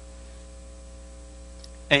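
Steady electrical hum of the recording system during a pause in a lecture, with a low drone and faint steady tones above it. A man's voice comes in with "uh" at the very end.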